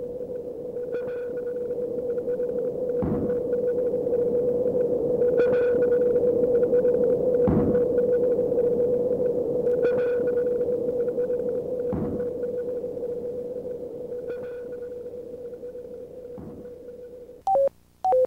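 A steady mid-pitched tone with soft pulses about every two seconds, slowly fading toward the end, followed by two short beeps.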